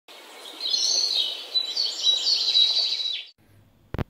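A bird calling: a quick run of chirps over a steady noise, which cuts off suddenly a little over three seconds in. A single click near the end.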